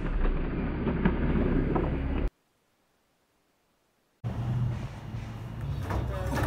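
Low rumbling noise with a few faint clicks, cut off dead about two seconds in; after about two seconds of total silence the rumble returns with a low steady hum.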